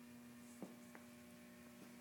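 Near silence with a faint steady hum and two faint ticks about half a second and a second in.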